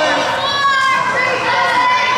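Overlapping chatter and calls of girls' voices and spectators in a gym, echoing.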